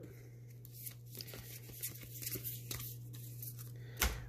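Faint rustling and light ticks of a stack of trading cards being handled and squared up in the hands, over a steady low hum.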